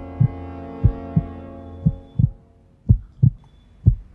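Heartbeat sound effect: pairs of low thumps, lub-dub, about once a second. A held tone fades out behind it over the first two seconds.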